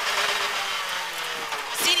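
Rally car engine heard from inside the cabin, off the throttle at lower revs as the car brakes and shifts down from second to first for a slow corner, quieter than at full power.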